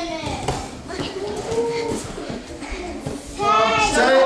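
Indistinct voices, children's among them, calling out during children's judo grappling, with a loud high-pitched call near the end.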